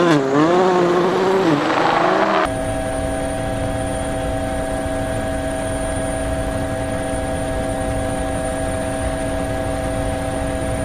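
A rally car's engine revving up and down through gear changes, cut off abruptly about two and a half seconds in. A helicopter then drones steadily, with a low rotor rumble under a constant whine.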